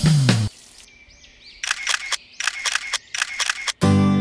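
Sung music cuts off about half a second in. A quiet stretch follows with a quick run of about a dozen sharp clicks, many in close pairs. Strummed acoustic guitar music starts suddenly near the end.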